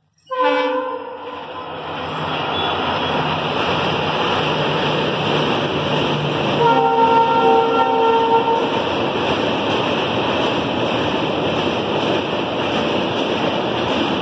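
Diesel passenger train with LHB coaches rumbling steadily across a steel truss bridge, led by a WDP-4 locomotive. The horn sounds briefly right at the start and again for about two seconds around seven seconds in.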